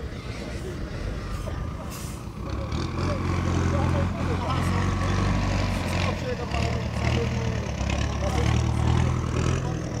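A truck engine running at a steady idle, a low rumble that gets louder about three seconds in and stays even.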